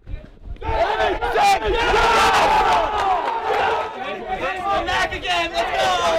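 A group of baseball players cheering and yelling together after a run scores, many voices overlapping. It starts suddenly about half a second in.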